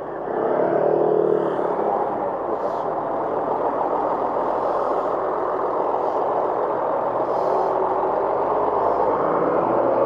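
Steady, loud street traffic close by, dominated by a large tour coach's diesel engine running alongside, with an engine hum most prominent about a second in and again near the end.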